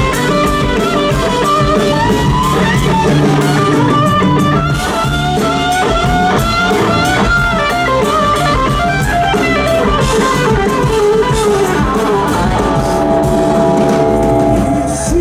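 Live rock band with an electric guitar solo on a black Les Paul-style guitar: quick single-note runs with bent notes, over drums and bass. Near the end the guitar settles into long held notes.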